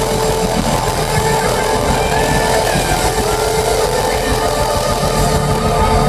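Live rock band playing loudly, a held note droning steadily under a dense, noisy wash of sound.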